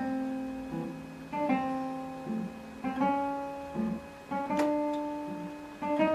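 Classical guitar playing a slow two-voice exercise: upper notes plucked about every second and a half are left to ring on, while short, clipped bass notes fall between them. It is a legato treble over a staccato bass.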